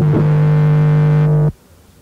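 Lo-fi experimental jazz-punk band recording: a single note is held steady, then cuts off suddenly about three quarters of the way through, leaving a short quiet gap.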